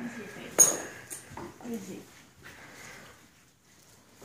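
A single sharp metallic clink about half a second in, ringing briefly, with quiet talk around it.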